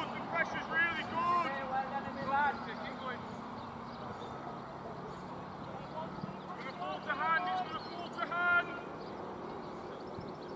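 Players' voices calling out across the cricket field, in two spells: one near the start and one in the second half.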